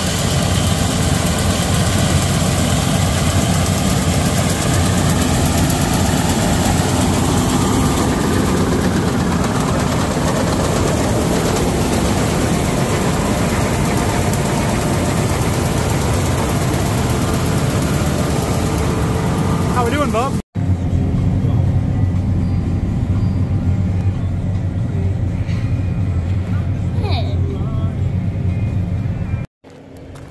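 John Deere combine harvester cutting wheat, its engine, header reel and threshing machinery running with a loud, steady drone. About two-thirds of the way through, the sound changes abruptly and loses most of its hiss, leaving the low rumble.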